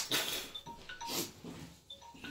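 A man breathing hard in short gasps, several in quick succession, some with a bit of voice in them, from the burn of a super-hot chile chip in his mouth.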